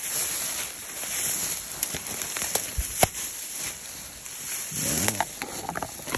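Footsteps pushing through tall dry grass and brush, with steady rustling and scattered sharp twig snaps, the loudest snap about three seconds in.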